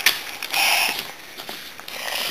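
A sharp click, then a brief papery rustle and a few small ticks as a picture-book page is handled and turned.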